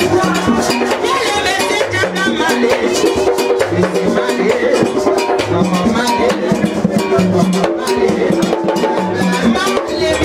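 Haitian Vodou ceremony music: drums beating a dense, steady rhythm with other percussion, and voices singing over it.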